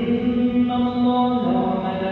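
A man's voice chanting Quranic recitation aloud during congregational prayer, holding long notes that step to a new pitch about a second in and again near the end.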